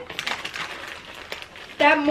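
Plastic packaging crinkling and crackling in small sharp bursts as a sweet packet is handled and pulled open, with a child's voice starting near the end.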